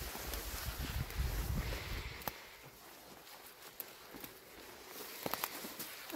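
Footsteps and clothing brushing through tall dry weeds, with rumbling handling noise on the microphone for about the first two seconds. It then goes quieter, with a few faint sharp clicks.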